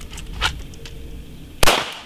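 A single handgun shot about one and a half seconds in, a sharp, loud crack with a brief tail. A lighter click comes about half a second in.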